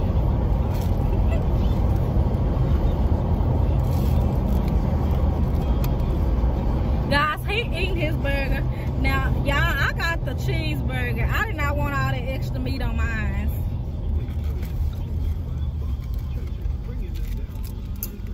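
Steady low rumble of a car heard from inside its cabin. High-pitched voices talk over it for several seconds in the middle.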